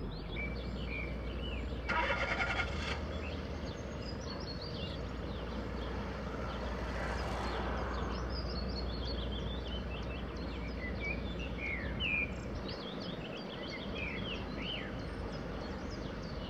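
Small birds chirping repeatedly over a steady low engine rumble that drops away near the end. A short rattling burst comes about two seconds in, and a brief rush of noise about halfway through.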